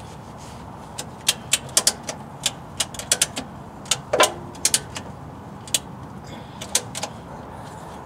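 Ratchet strap's ratchet clicking sharply and irregularly, a dozen or more clicks spread over several seconds, as the strap is worked as a makeshift wrench on a stuck oil filter.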